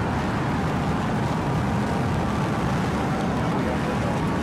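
SpaceX Starship's Super Heavy booster lifting off, its 33 Raptor engines making a steady, dense rocket roar.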